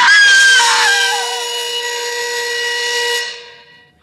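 A woman's high scream that slides down and wavers as it dies away, over a held dramatic music chord that fades out near the end.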